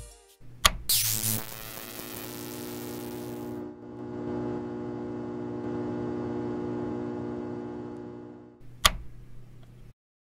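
Sound effect of a neon sign switching on: a click and a rising swoosh, then a steady electric buzz that ends with a sharp click near the end.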